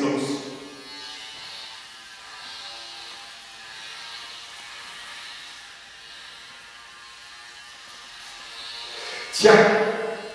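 Electric shaver running with a steady buzz, held to the face.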